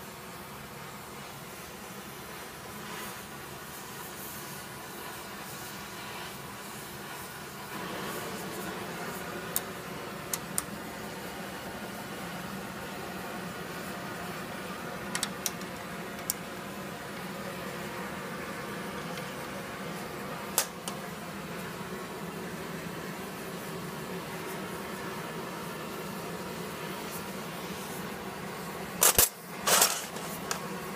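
Steady workshop drone and hiss, with a few sharp metallic clicks scattered through and a louder metal clatter near the end, as hand tools and steel wrenches are handled at a bench vise.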